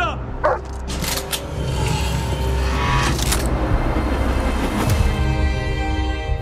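Trailer score and sound design: two sharp hits about a second in, then a rising swell of noise over a low drone, with a sustained chord coming in near the end.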